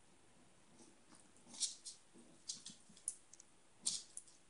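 Several faint, sharp clicks spread irregularly, the loudest about a second and a half in and just before the end: a small dog's claws ticking on a tile floor as it shifts its feet.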